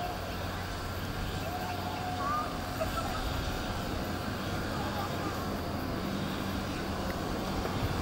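Outdoor ambience: a steady low hum with faint, distant voices.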